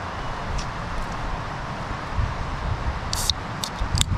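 Wind buffeting the microphone in uneven gusts over a steady rushing of river rapids, with a few short, crisp clicks about three seconds in.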